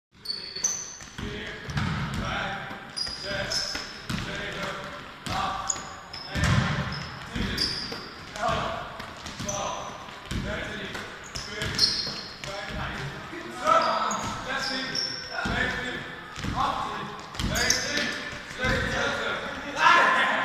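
Basketball repeatedly tipped against the backboard and bouncing on the hall floor, with short high sneaker squeaks on the court and players' voices, all echoing in a large sports hall.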